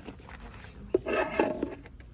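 A dog's short vocal sound, pitched and wavering, about a second in, just after a light knock.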